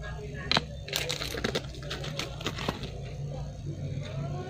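Small sharp clicks and taps from fingers handling a pair of earrings: one click about half a second in, then a quick cluster of clicks over the next two seconds, with a steady low hum throughout.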